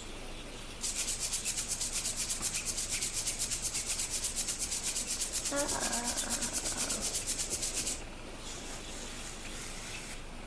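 Cartoon sound effect of fingers rubbing rapidly along cage bars: a fast, even rasping scrape of about seven strokes a second. It starts about a second in and stops about two seconds before the end.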